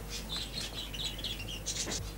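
Small cage birds chirping: a quick run of short, high chirps.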